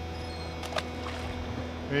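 Boat engine idling with a steady low hum, with two brief sharp sounds about three-quarters of a second in.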